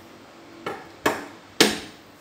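Three sharp knocks with a short ring, about half a second apart, the last the loudest, as a carbon telescopic hand fishing pole is handled and picked up off a wooden table.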